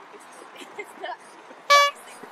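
A single short, loud horn toot near the end, over faint street traffic and voices.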